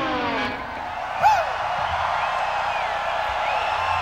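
A final guitar chord slides down in pitch and stops about half a second in, giving way to a large concert crowd cheering, with whoops rising above it; the loudest whoop comes just over a second in.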